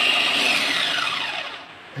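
Mienta electric food chopper running with an empty bowl, its motor whine falling in pitch and fading away as it winds down.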